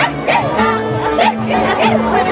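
Live Andean traditional music: violins and a harp playing, with women singing in high, wavering voices.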